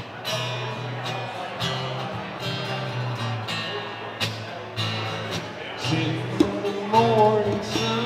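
Acoustic guitar strummed in a steady rhythm with djembe hand-drum beats about twice a second. A voice comes in with a few wavering notes near the end.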